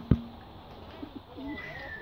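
A sharp knock, then a few soft, low, wavering bird calls and a thin high whistle near the end.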